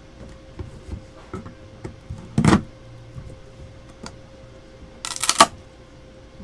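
Plastic wrapper being cut and peeled off a trading-card hobby box and the lid opened: light scratching and crinkling, with two louder rustles, one about halfway through and a quick cluster near the end.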